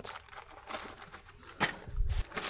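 Handling noise as a handheld multimeter is slid into a fabric drawstring pouch: faint rustling of the cloth, a sharp click about one and a half seconds in, and a low thump near the end as the pouch is set down on a pile of bagged parts.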